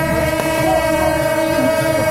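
Suona (Chinese shawm) band playing, several reedy horns sounding a loud, held melody together, with notes sliding between pitches.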